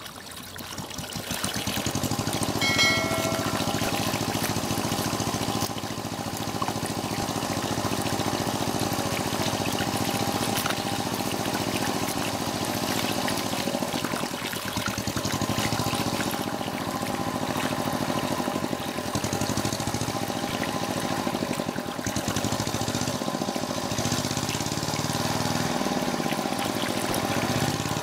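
Muddy water pouring and splashing over rock, with a small engine running steadily underneath, such as the motor of a water pump.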